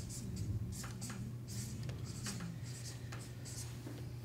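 Dry-erase marker writing on a whiteboard: a run of short, irregular strokes over a steady low hum.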